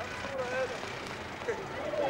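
Busy street ambience: a steady wash of traffic noise with faint, scattered voices.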